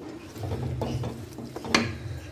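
Spatula scraping and knocking against a steel kadai while stirring thick fried dal, with a few sharp clacks, the loudest shortly before the end.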